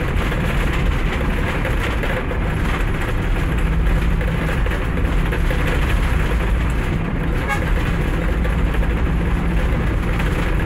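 Steady engine and road rumble heard from inside the cabin of a moving road vehicle.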